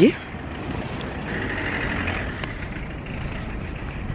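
Steady outdoor background noise, a low rumble with a light hiss.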